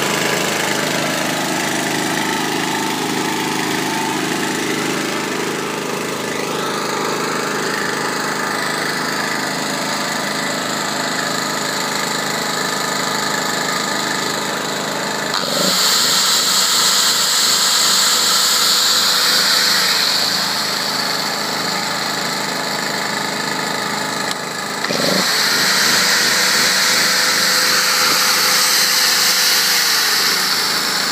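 Kruzer TH 2500 generator's four-stroke engine running steadily. About halfway through, an angle grinder powered from it spins up with a rising whine, runs for about four seconds and winds down, then runs again for about five seconds near the end: a load test of the generator after its AVR regulator was adjusted.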